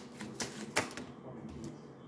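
A deck of tarot cards being shuffled by hand: three sharp clicks of cards snapping together in the first second, then quieter.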